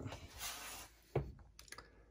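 Faint handling noise: a short breathy hiss, a brief low vocal sound about a second in, then a few light clicks near the end.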